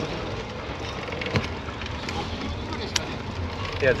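Steady rushing of wind and rolling noise while moving along a velodrome track behind a track cyclist, with sharp clicks about one and a half and three seconds in.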